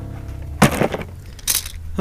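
A cardboard box holding tools and a coil of solar cable set down on a rock: two short clattering knocks, about half a second and a second and a half in, the second sharper and higher. The tail of acoustic guitar music dies away just before the first knock.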